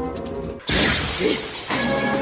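Music from the routine's soundtrack, broken about two-thirds of a second in by a sudden loud shattering crash sound effect that fades over about a second as the music returns.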